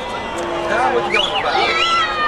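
Voices on a field hockey pitch shouting and calling out, with high whooping calls that rise and fall in the second half.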